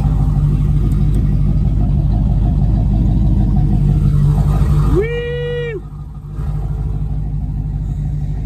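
Turbocharged Silverado pickup heard from inside its cab, its engine droning steadily at road speed, then easing off and getting quieter a little after five seconds in. A brief held high tone sounds over it about five seconds in.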